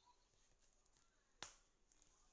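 Near silence with a single sharp click about one and a half seconds in.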